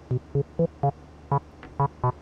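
Abstrakt Instruments Avalon Bassline, a TB-303 clone bass synthesizer, playing a sequenced pattern of short, separate bass notes, about seven in two seconds. The notes grow brighter as the filter opens while a knob is turned down toward zero.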